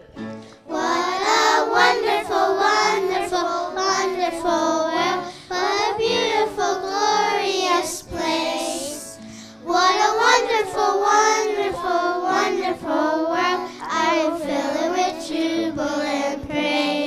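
A group of young girls singing together into handheld microphones, with a short break between phrases about eight seconds in.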